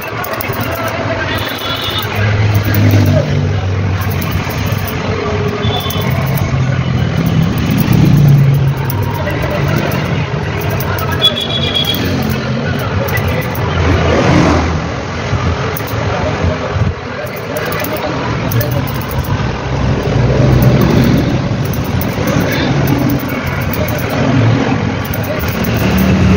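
Motor vehicle engine noise mixed with people's voices, continuous and fairly loud.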